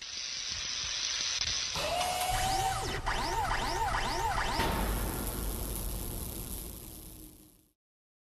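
Animated logo-reveal sound effect: a hissing whoosh builds, then a run of quick shimmering up-sweeps with chiming tones plays over a deep low rumble, and it all fades out near the end.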